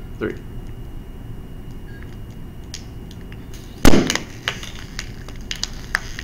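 Cap popping off a tightly twisted thin plastic water bottle: one sharp, loud pop about four seconds in as the compressed air inside escapes all at once. A few small crinkles of the plastic come just before and after it.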